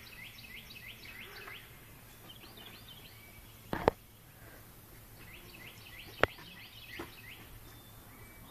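A bird singing runs of quick chirps that fall in pitch, early on and again about five seconds in, over faint outdoor background noise. Two sharp knocks stand out, one near the middle and one about six seconds in.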